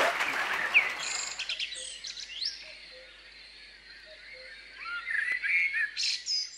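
Applause dies away in the first second. Then birds chirp and sing, with many short rising and falling calls, growing louder again near the end.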